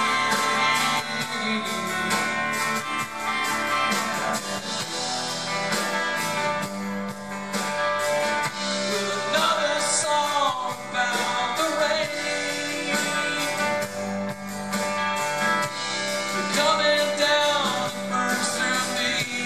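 Live rock band playing with electric and acoustic guitars, electric bass and drums under a steady beat. A melodic line bends in pitch about halfway through and again near the end.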